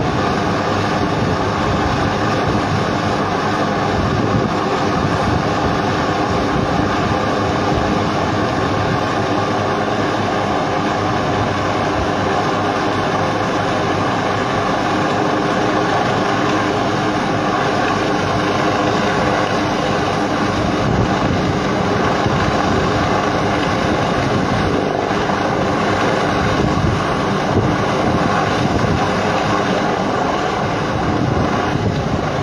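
Military helicopter hovering: a steady, loud drone of rotor and engine, with several steady tones in it.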